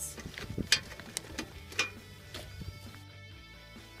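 Background music with plucked guitar-like notes.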